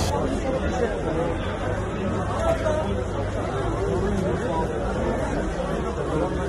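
Crowd of bystanders in a street talking over one another: indistinct chatter with no single clear voice, over a steady low rumble.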